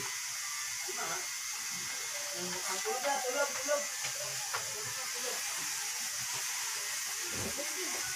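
Steady recording hiss. Faint, quiet speech or muttering comes through now and then, mostly in the first half.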